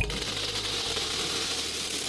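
Many small freshwater snail shells pouring out of a netted basket and clattering into a stainless-steel basin with a little water in it, a dense steady rattle.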